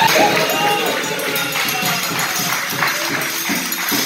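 Capoeira roda music starting abruptly: a group clapping in rhythm along with pandeiro jingles and drumming.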